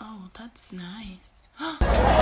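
A woman's voice making a few short, quiet vocal sounds with a wavering pitch, with no music under it; loud music comes back in near the end.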